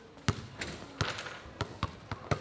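Basketballs being dribbled on a hard floor: about four sharp bounces at an uneven pace.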